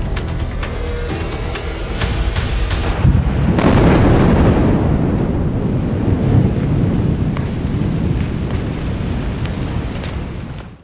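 A controlled explosive blast in hard rock goes off about three seconds in. A long rumble of shattered rock and debris pouring down the mountain face follows it.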